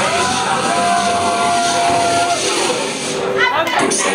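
A DJ's voice through a microphone and PA, calling out to the crowd with one long held call about a second in, over dance music from the decks. Near the end comes a quick run of rising sweeps.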